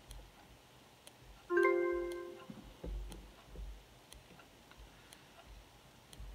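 A single electronic chime from an online auction page, a piano-like note that sounds about a second and a half in and fades over about a second, marking a new bid coming in. Faint ticks sound about once a second underneath.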